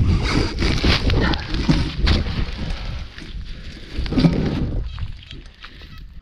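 Spade being driven and levered into hard, dry field soil through crop stubble: a dense run of crunches and scrapes, busiest in the first three seconds, with one more burst about four seconds in.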